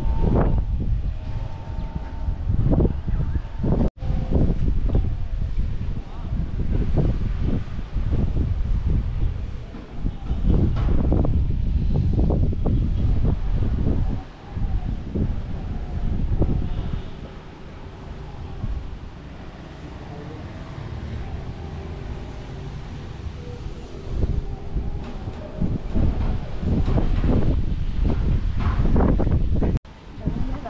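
Wind buffeting the microphone in gusts, a loud low rumble that rises and falls and eases off for several seconds past the middle.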